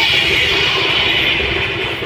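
Loud DJ sound-system music in a beatless break: the bass kick drops out and a steady hissy wash holds, easing slightly towards the end.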